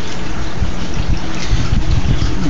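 Steady rush of running water circulating in an aquaponics system, a continuous even wash of sound with a low rumble under it.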